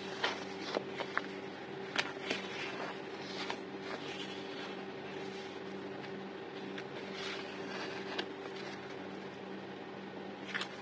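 Glossy sticker sheets handled and shuffled by hand, giving irregular crinkles and sharp ticks, most of them in the first few seconds. A steady low hum runs underneath.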